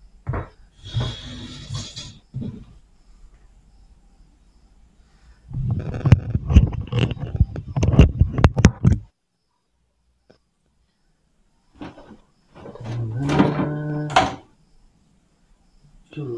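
A tyre and alloy wheel handled on a tile floor: scattered knocks, then a dense run of sharp knocks and thuds about six seconds in as the wheel is tipped over and laid flat. Near the end comes a steady pitched drone lasting about two seconds.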